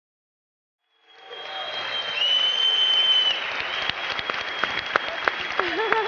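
Studio audience applauding, fading up from silence about a second in to steady loud clapping, with a high whistle held over it.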